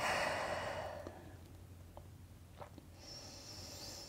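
A woman's audible exhale, a sigh, at the start, fading away over about a second, followed by a quieter breath near the end.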